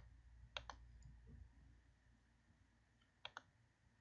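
Computer mouse button clicking faintly, two quick pairs of clicks: one pair about half a second in and another near the end.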